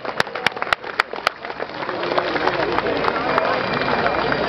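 Pipe band drums beating evenly, about three and a half strokes a second, stopping about a second and a half in; then crowd voices with some clapping.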